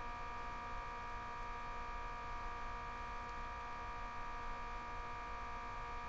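Steady electrical hum, a constant buzzy drone made of several fixed tones, with nothing else happening.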